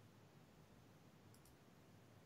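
Near silence: faint room tone, with two faint, short, high clicks close together a little under a second and a half in.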